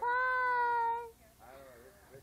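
A person's voice drawing out the word 'pie' in a long sing-song call, held at one high, level pitch for about a second before it stops; faint talk follows.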